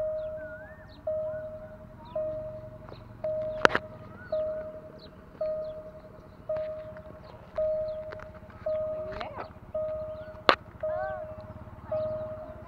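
Railway level-crossing warning bell sounding a single ding about once a second, each one fading before the next, warning of an approaching train. Faint high chirps run over it, and two sharp clicks, about four seconds and ten and a half seconds in, are the loudest sounds.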